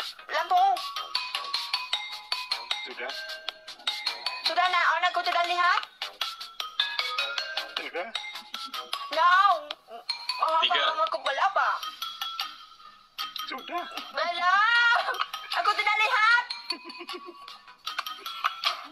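Lively, high-pitched voices over background music, with many short clinks and clicks scattered through.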